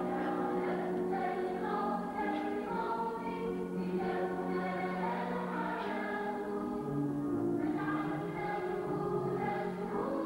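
A choir of mixed voices singing a liturgical hymn together, in long held notes.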